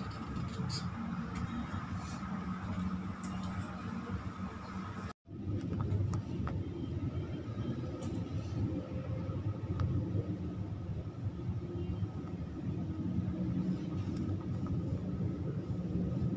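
Steady low background rumble with a faint high hum running through it, cut off for a moment about five seconds in, with a few faint ticks.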